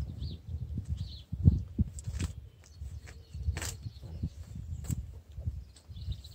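Wind buffeting the microphone as a low rumble, with a few sharp clicks and rustles from a bundle of bare plum scion twigs being handled and one stem drawn out. Two faint high bird chirps in the first second.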